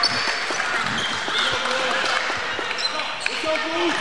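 Gymnasium ambience: chatter from a small crowd and players' voices, with a basketball bouncing on the hardwood court now and then.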